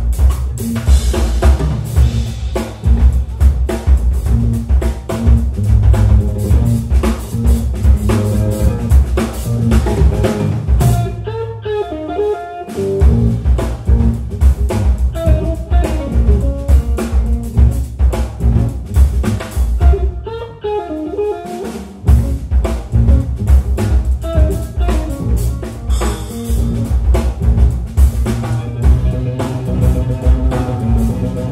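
A jazz-funk trio of electric guitar, electric bass and drum kit playing a busy groove, with the drums driving hard. Twice the drums and bass drop out for a moment and a short guitar phrase stands alone before the groove comes back in.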